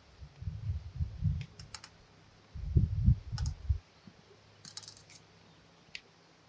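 Fence wire being wound into tight wraps around itself with a wire-twisting crank handle at a terminal insulator: scattered sharp metallic clicks of the wire and tool. Two spells of low rumble are the loudest sound.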